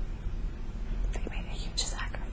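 A woman's soft breathing and faint whispery mouth sounds, with small clicks of the lips and tongue that grow more frequent in the second half, over a steady low hum.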